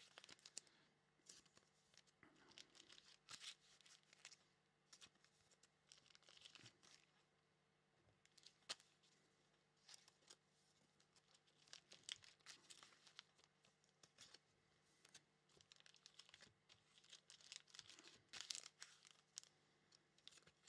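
Very faint rustling and crinkling of plastic card sleeves and wrappers being handled, with scattered light clicks.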